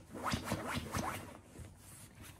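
A Shiba Inu rubbing and scrabbling against the fabric of a padded dog bed: about five quick, zipper-like scratchy strokes in the first second, then softer scuffing.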